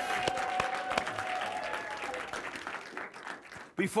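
Studio audience applauding, with one long held cheer over the first two seconds; the clapping thins out and dies away near the end.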